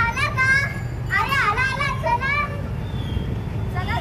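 Children's high voices calling out in drawn-out tones, with a steady low rumble underneath.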